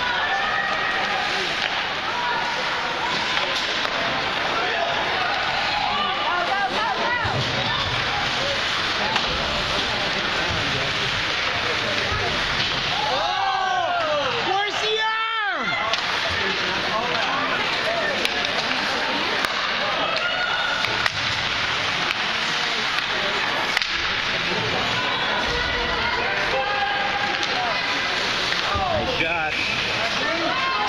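Ice hockey game heard from the stands: steady spectator chatter and rink noise, with a few sharp knocks of stick and puck. A brief falling-and-rising sweep comes about halfway through.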